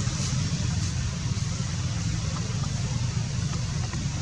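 A steady low engine drone, like a motor idling, under a constant hiss.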